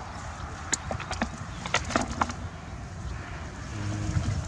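A blue mesh scoop net being shaken out over a plastic bucket, with a quick run of short taps and rustles in the first half as the catch drops in, over a steady low rumble.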